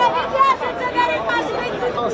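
Crowd chatter: several people talking at once, their voices overlapping, in a tightly packed crowd of protesters.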